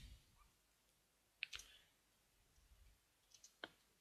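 Near silence with a few faint computer keyboard keystroke clicks: one about a third of the way in and a small cluster near the end.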